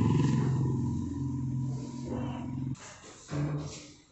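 A low, steady engine drone that cuts off abruptly almost three seconds in, followed by a brief low hum.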